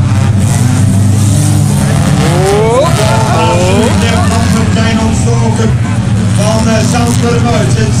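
Engines of several autocross cars running on a dirt track, with two or three of them revving up together about two to four seconds in as they accelerate. A PA announcer's voice runs over them.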